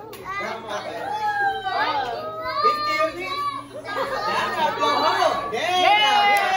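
Several people talking and calling out over one another, a child's voice among them: the steady chatter of a small party crowd.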